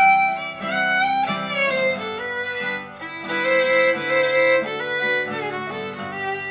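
Cajun fiddle playing a melody, sliding up into some notes, over a strummed acoustic guitar.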